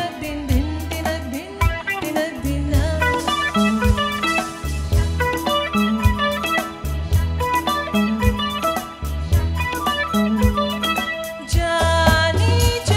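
Live band playing an instrumental passage of a Bollywood film song: electric guitars and keyboards carrying the melody over bass guitar and a steady drum beat. A woman's singing voice comes back in near the end.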